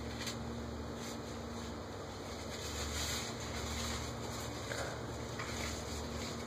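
Quiet steady background noise with a low hum and a few faint ticks; no distinct event.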